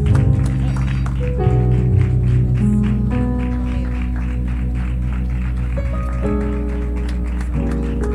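Instrumental music: sustained chords that change every second or two.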